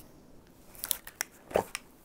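Half-face respirator with pink filter cartridges being pulled on and fitted: a few small plastic clicks and strap rustles, bunched about a second in, with a brief vocal sound shortly after.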